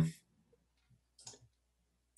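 A voice trails off at the very start, then near silence on the call line, broken by one faint short click a little over a second in.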